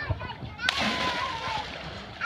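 A child jumping off a dock into lake water: one sudden splash a little under a second in, its spray fading over about a second.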